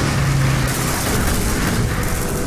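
Loud engine noise of a Spitfire fighter plane flying low toward and past, a dense rush with a steady low engine note in the first second that then fades into the noise.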